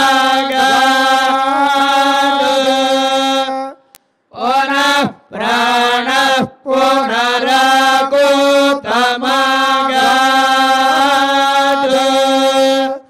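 Sanskrit Vedic mantras chanted in long, evenly held tones, broken by a few short pauses for breath midway.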